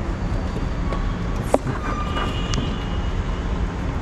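Go-kart engines running in a steady low rumble, with a few light clicks and knocks from the kart, one about a second and a half in.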